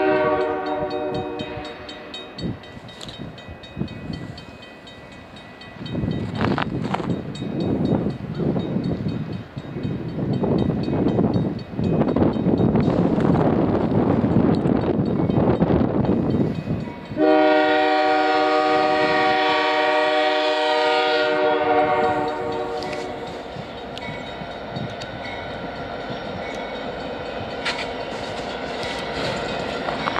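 CN freight locomotive's air horn: a short blast at the start and a long loud blast about 17 seconds in, with a rumbling noise swelling in between as the train approaches.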